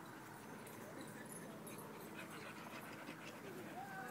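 A dog panting faintly, with no louder event over it.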